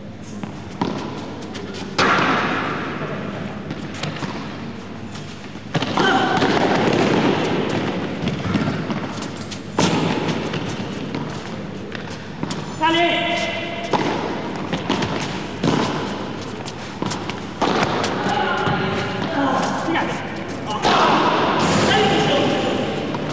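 A padel rally: a series of sharp knocks as the ball is struck by solid paddles and rebounds off the court floor and walls, with voices in the background.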